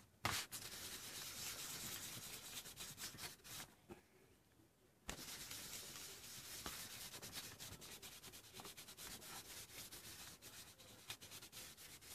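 Faint, rapid scratchy rubbing of a wadded baby wipe working acrylic paint into collaged paper pages. It breaks off for about a second near the four-second mark, then starts again.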